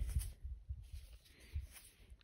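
Faint handling noise: a few soft low bumps and light rustling as a hand turns a small coin over close to the microphone.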